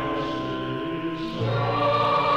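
Film soundtrack music of long held chords, with a choir singing. The harmony shifts about one and a half seconds in as a low note comes in.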